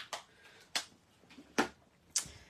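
Three or so sharp clicks and taps, the loudest near the end, from handling a stamp positioning platform and swinging its hinged clear lid over to stamp.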